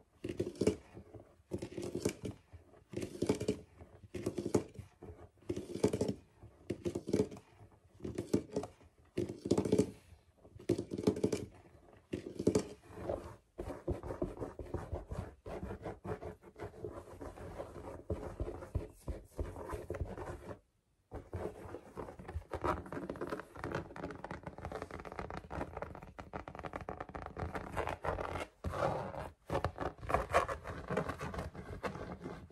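Fingers scratching a shaggy rug: separate strokes about once a second at first, then fast, continuous scratching from about halfway in, broken by a short dropout.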